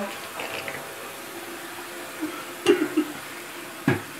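Bathroom tap running steadily into the sink while teeth are brushed, with a short voice sound near the end.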